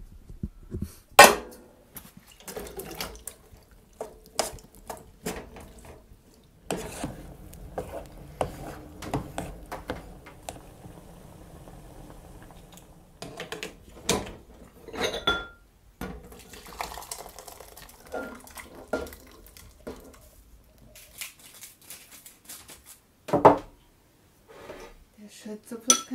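Kitchen clatter: a metal cooking pot handled on an electric hob, with dishes and cutlery clinking and knocking in irregular sharp clicks, the loudest about a second in and again near the end.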